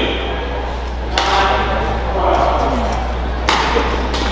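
Two sharp strikes of a badminton racket on a shuttlecock, a little over two seconds apart, echoing in a large hall over a steady low hum.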